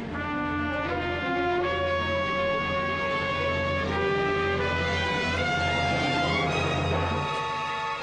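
Music: brass instruments holding sustained notes that change every second or so over a steady low drone, which stops near the end.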